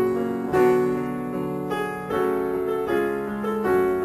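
Piano music, with chords and melody notes struck about every half second, each one fading away after it is played.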